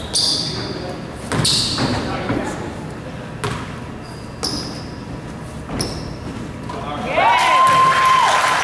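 A basketball bouncing on a hardwood gym floor: a handful of separate bounces, each a sharp knock with a short high ring, spaced about one to two seconds apart. Near the end, voices rise into shouting and echo around the hall.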